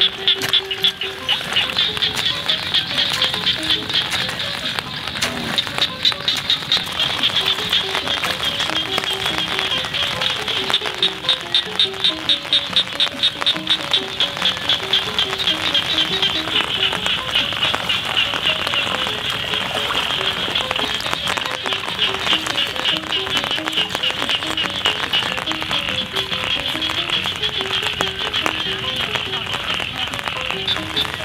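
Background music with a melody of short notes, over a steady, high-pitched chorus of frogs calling in rapid, even pulses.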